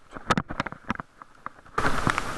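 Irregular sharp clicks and taps picked up through a waterproof camera case, muffled. A steady hiss sets in suddenly near the end.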